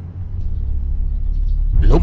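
A low, steady rumble in the drama's soundtrack, growing louder across the two seconds, with a man's voice starting near the end.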